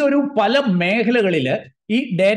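A man talking in Malayalam, speech only, with a brief pause near the end.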